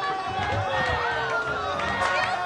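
A rowdy crowd of men shouting and calling over lively music with a steady low beat, one long drawn-out falling call standing out in the middle.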